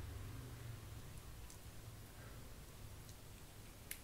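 Faint low breathy rush of a vape cloud being exhaled after a hit from a single-battery vape mod, fading within about the first second. One light click near the end.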